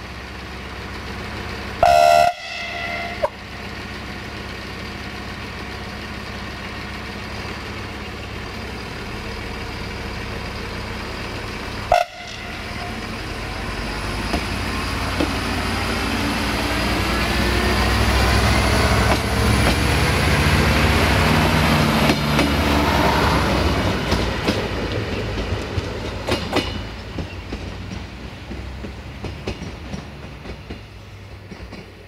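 Siemens Desiro diesel multiple unit sounds its horn once, loudly, about two seconds in, with a brief second toot near twelve seconds. It then passes close by, its diesel engine noise building with a rising whine, and its wheels click over the rail joints as it goes.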